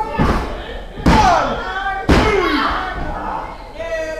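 A referee's hand slapping the wrestling-ring mat for a pinfall count: a softer thud, then two loud slaps about a second apart, with voices calling out after each slap.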